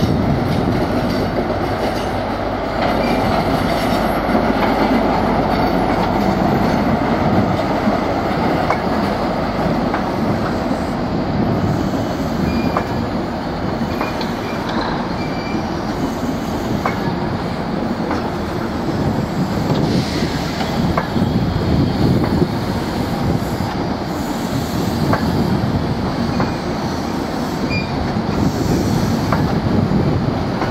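CrossCountry High Speed Train passing: the leading Class 43 power car's diesel engine goes by, then its Mk3 coaches rumble steadily over the rails, with scattered clicks from the wheels and a faint wheel squeal now and then.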